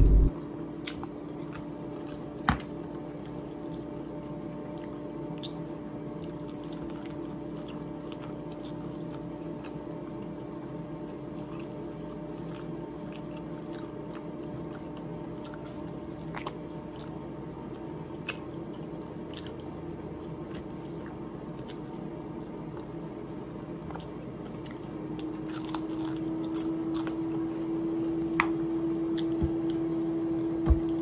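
Close-up eating sounds: a person chewing and biting into chicken, with scattered small clicks and smacks, over a steady low hum.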